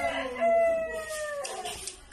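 A rooster crowing: one long drawn-out note that sags slightly in pitch and fades out about a second and a half in.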